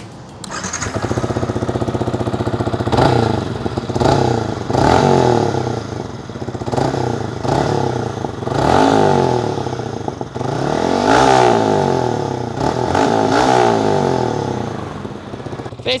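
Yamaha MT-15's single-cylinder engine running through an aftermarket HONG full exhaust system: idling, then blipped repeatedly, the pitch rising and falling with each rev. The exhaust note is very quiet and not harsh.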